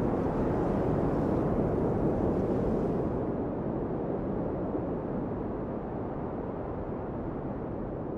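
Steady low rushing of wind, with no tune or rhythm; its high end drops away about three seconds in and it slowly fades.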